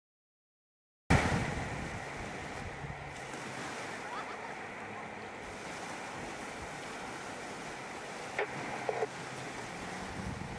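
Silence for about a second, then small waves breaking and washing on a sandy beach, a steady surf sound with some wind on the microphone. Two brief faint sounds stand out near the end.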